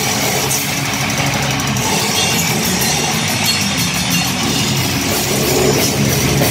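Live heavy metal band playing loud: distorted electric guitars and bass over a drum kit.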